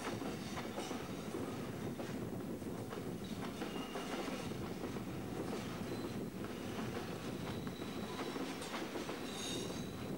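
Passenger coaches rolling past close below, a steady rumble of wheels on the rails with irregular clicks over rail joints. Faint high wheel squeals come and go, strongest briefly near the end.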